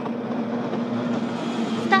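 Several racing boats' two-stroke outboard engines running together at full throttle, a steady engine note over a rushing hiss that brightens toward the end as the boats reach the start line.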